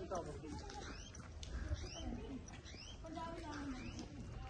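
A bird calling repeatedly, a string of short rising chirps about two a second, over voices in the background.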